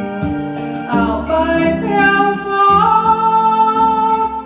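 A song with a solo singer over instrumental backing, guitar among it, with a steady beat of about two a second; the singer holds one long note over the last second.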